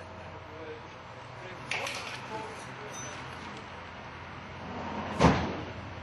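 A hammer knocking on a galvanised steel bell frame: a light clink about two seconds in and a louder metallic blow just after five seconds.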